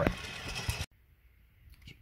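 A short rustling scrape with a few small clicks, a hand brushing right against the phone's microphone as the door is handled. It cuts off abruptly a little under a second in, leaving quiet room tone.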